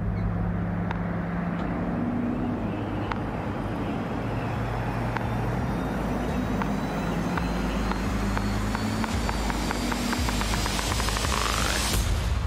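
Heavy-duty pickup truck driving, a steady low engine-and-road hum under a faint, slowly rising high whine. Over the last few seconds a run of ticks quickens and builds toward the end.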